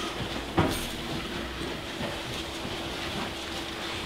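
Bible pages being leafed through and handled at a pulpit, faint rustles with one sharp knock about half a second in, over a steady low hum of room noise.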